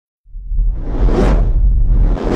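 Cinematic whoosh sound effect for an animated logo intro: it rises out of silence over a deep, steady low rumble and swells to a peak about a second in.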